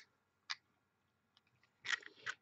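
Mostly quiet, with one faint short click about half a second in and a few fainter ticks later.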